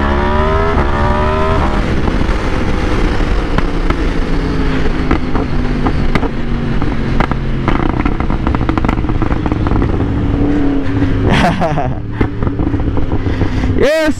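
Yamaha R1's crossplane inline-four engine accelerating, its pitch climbing through a gear change in the first couple of seconds. It then runs steadily at cruising speed under loud wind rush.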